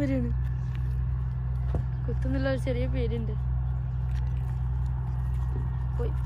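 A steady low hum runs under everything. A person's voice speaks briefly at the start and again for about a second, a little over two seconds in.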